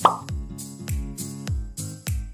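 A short cartoon plop sound effect right at the start, the loudest moment, then upbeat background music with a steady kick-drum beat about twice a second.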